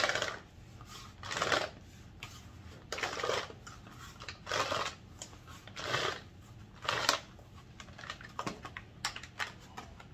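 A Gamma Seal spin-on plastic lid being screwed onto its ring on a five-gallon plastic bucket. Plastic rasps against plastic in turning strokes about every one and a half seconds, with a few light clicks near the end.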